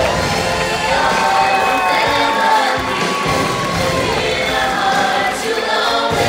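Singers on microphones singing over amplified backing music, holding one long note from about a second in for about three seconds, while a crowd cheers.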